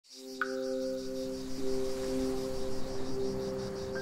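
Ambient soundtrack music: sustained low notes held under a fast, evenly pulsing high shimmer, with a single ringing note struck about half a second in.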